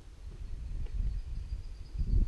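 Uneven low rumble of wind and movement noise on a body-worn camera's microphone, with a faint, thin, steady high tone in the background from about half a second in.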